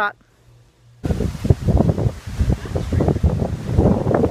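Wind buffeting a handheld camera's microphone, a loud, uneven low rumble in gusts that starts suddenly about a second in after a moment of quiet.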